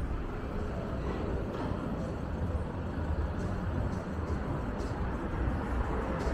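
City street traffic: a steady low rumble of vehicles on the road.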